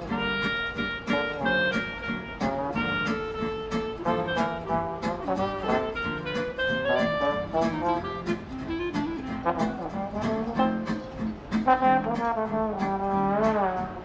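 Small acoustic band playing an instrumental passage: trombone and clarinet carry the melody over a guitar keeping a steady rhythm.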